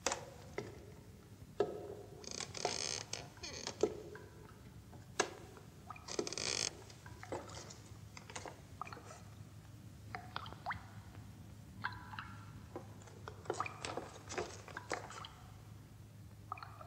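Footsteps and creaking wood: scattered knocks and clicks with short squeaky creaks. The squeaks come in two brief bursts early on and as a run of short squeaks in the second half.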